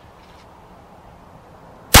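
A single pistol shot near the end, a .40 round fired from a Rock Island 10 mm pistol: one sharp, very loud crack with an echo trailing off behind it.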